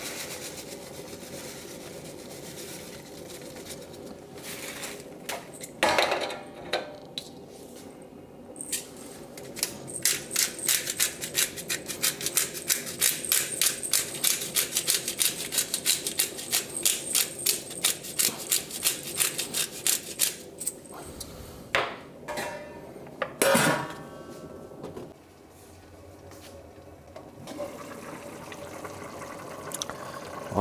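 Pepper mill twisted over a stainless steel stockpot, grinding out a long, even run of crisp clicks at about four a second for roughly ten seconds. A loud metallic clank from the pot comes before the grinding and another after it.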